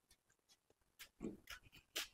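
Faint footsteps of slippers on a hard floor, a few steps about half a second apart starting about a second in, over near silence.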